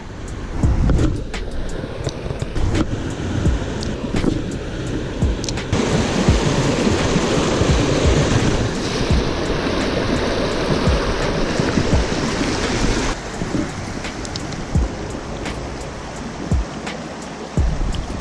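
Creek water rushing and splashing over a shallow, rocky riffle, growing louder for several seconds in the middle as the microphone nears the fast water, with scattered short knocks.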